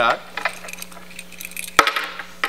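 Small metal hardware clinking and rattling as a bungee cord's metal hook is handled, then one sharp snap about two seconds in as the hook clips into its bracket.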